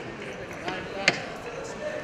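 Indoor wrestling-arena crowd murmur with scattered voices, and one sharp smack about a second in.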